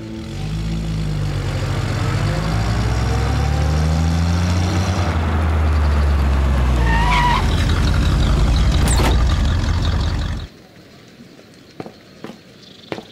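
Jeep engine revving up as the vehicle pulls away, then running steadily while it drives, with a brief high squeal about seven seconds in and a sharp knock near nine seconds. The engine sound cuts off abruptly about ten and a half seconds in.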